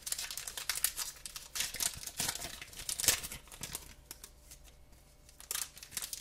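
Foil trading card pack wrapper being torn open and crinkled by hand: a dense run of crackles and rips that dies down about four seconds in, with a few more crackles near the end.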